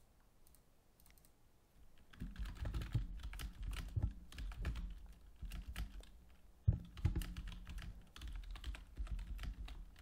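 Typing on a computer keyboard: a quick, irregular run of key clicks that starts about two seconds in, with one sharper keystroke near the middle.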